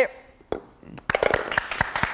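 Studio audience clapping, breaking out about halfway through after a single sharp click, many quick uneven claps.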